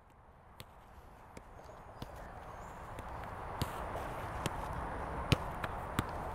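Football (soccer ball) being passed along the grass: a series of sharp kicks, roughly one a second, over a faint hiss that slowly grows louder.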